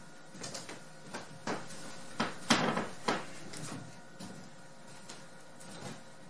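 Shoes stepping and sliding across a wooden plank floor during waltz steps: a series of irregular soft knocks and scuffs.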